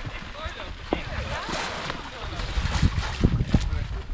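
Wind buffeting the microphone in low rumbling gusts that grow heavier in the second half, with faint voices of onlookers talking in the background.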